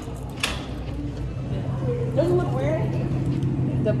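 Indistinct talk over a steady low hum, with a short sharp knock about half a second in.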